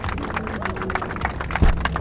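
A crowd applauding, many hands clapping at once, with a single low bump on the hand-held microphone near the end.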